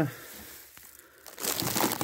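Rustling, crinkling handling noise, most likely from the phone being moved in the hand. It is faint at first and grows loud in the last half-second.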